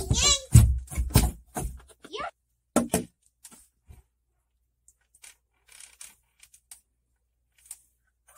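A voice sounds in short, strained calls during the first two seconds or so. After that come a few faint scattered knocks and ticks, with long quiet gaps in between.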